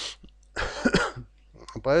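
A man coughs once, a short rough cough that clears his throat, just over half a second in, before his speech resumes near the end.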